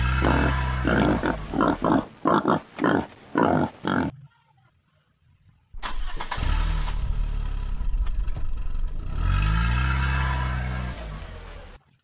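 Car engine sounds: an engine catching and revving in a run of short blips about half a second apart, then cut off. After a gap of about a second and a half it runs again, with one rev that rises and falls in pitch near the end before stopping abruptly.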